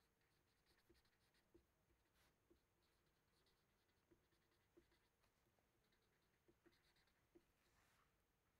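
Near silence, with faint strokes and small taps of a felt-tip marker writing on paper.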